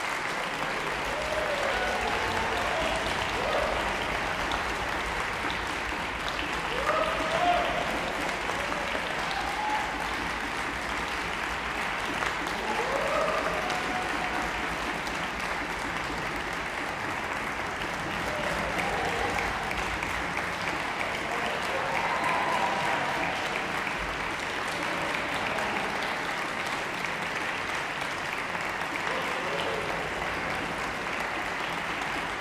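Audience applauding steadily, with voices calling out now and then over the clapping.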